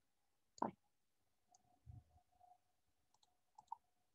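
Near silence, with one short spoken word just after the start and a few faint, short clicks later on.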